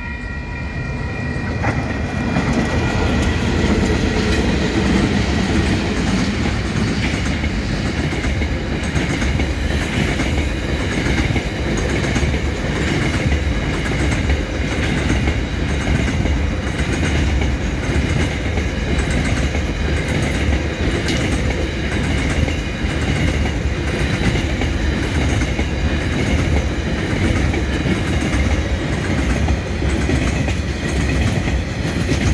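A freight train passing close by on a slow shunt move. Its DX-class diesel-electric locomotives draw near and go past in the first few seconds, growing louder. Then a long string of freight wagons rolls by with a steady rumble and clatter of wheels on the rails.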